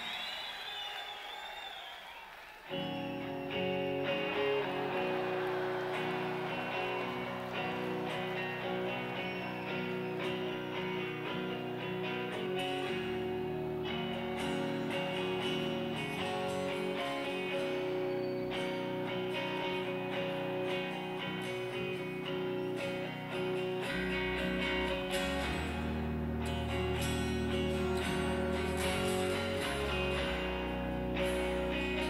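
A live rock band begins a slow song on electric and acoustic guitars, coming in sharply about three seconds in after a short quiet lead-in. Deep low notes join near the end.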